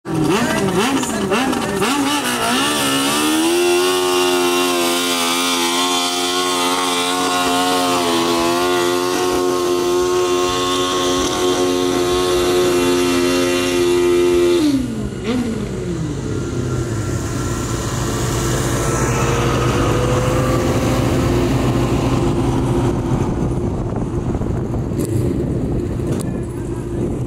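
Modified ATV engine in a tractor-pull run: revs waver for the first few seconds, then it holds high, steady revs under load pulling a weight-transfer sled for about eleven seconds. About fifteen seconds in the revs drop suddenly and it runs on at a lower, rougher note.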